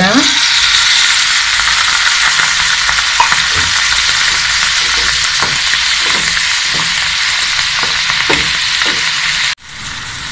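Water poured into a hot pan of oil and spice-coated baby potatoes, sizzling loudly and steadily, with a wooden spatula scraping the pan in repeated strokes as it is stirred. The sizzle cuts off suddenly just before the end.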